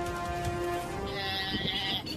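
Background music with steady held tones. About a second in, a young antelope gives a high-pitched bleating distress cry lasting about a second, the call of prey seized by a leopard.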